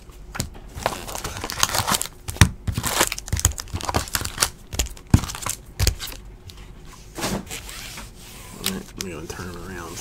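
Foil-wrapped trading card packs and their cardboard hobby box being handled: crinkling and rustling with many short sharp crackles, and some tearing.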